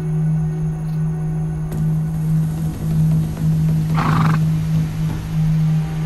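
Documentary background music with a steady low drone. About four seconds in comes a short call from a Przewalski's horse.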